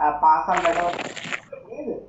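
A man's voice speaking, broken by a burst of hissing, breathy noise from about half a second in that lasts nearly a second.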